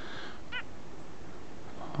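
A small wild songbird gives one short call about half a second in.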